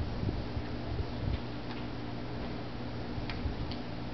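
A steady low hum with a few faint, sharp clicks scattered through it, and some low thumps in the first second and a half.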